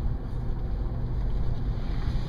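Steady low rumble of engine and tyre noise heard from inside the cabin of a car driving along a paved road.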